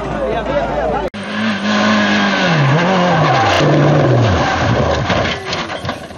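A racing engine revving hard at close range, cut off abruptly about a second in. Then a rally car's engine note falls, rises briefly and falls away as the car slides out of control with some tyre skidding, and a series of sharp knocks near the end as it goes over onto its side.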